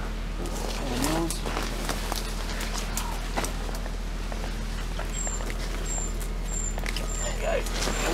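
Brambles and undergrowth rustling, snapping and crackling as a heavy backpack is pushed and dragged down through them, with a couple of brief grunts. From about five seconds in, a high short chirp repeats about every half second.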